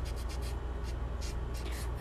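Folded tissue rubbed over charcoal shading on drawing paper to blend it smooth: a run of short, soft scratchy rubbing strokes.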